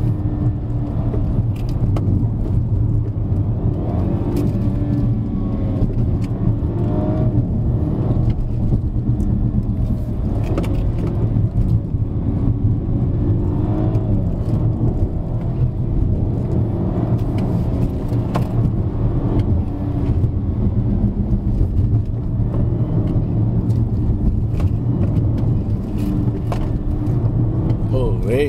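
BMW F30 330i's turbocharged four-cylinder engine heard from inside the cabin as the car is driven briskly up a winding hill road. The engine pitch rises and falls several times with throttle and gear changes, over a steady drone of road and tyre noise.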